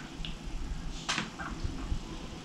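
A few faint, short soft sounds of a makeup sponge being dabbed against the face, over a low room hum.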